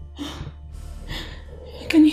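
A woman sobbing: short gasping breaths about twice a second, then a loud cry in her voice breaking out just before the end.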